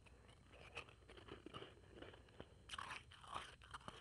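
Chewing a mouthful of blended ice powder: a run of crisp, irregular crunches, thickest about three seconds in.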